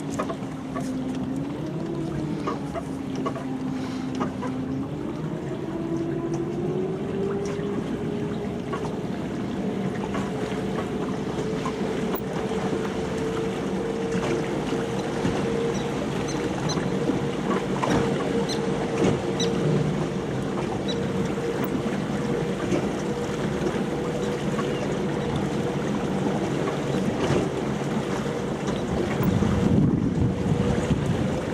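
Electric drive of a DC-converted Glastron speedboat whining under way. The whine dips in pitch in the first few seconds, then rises slowly as the boat gathers speed, over water rushing along the hull and wind on the microphone.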